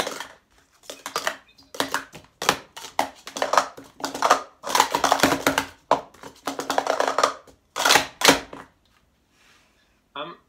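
Plastic sport-stacking cups clattering against each other and the stacking mat as they are stacked up and down, in a quick series of bursts that stops shortly before the end.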